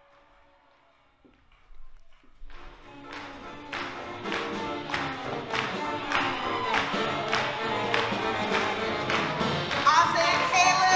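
Near silence for about two seconds, then a live swing band starts up and builds, with a steady beat of about two strokes a second.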